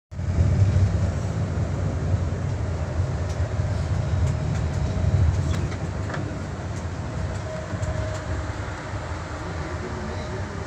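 Steady low engine and road rumble heard from inside a moving bus, a little louder over the first half, with a faint steady whine and a few light rattles.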